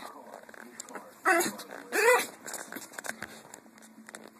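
Dog vocalizing in play: two short, loud calls, one a little over a second in and one about two seconds in, the second rising and falling in pitch.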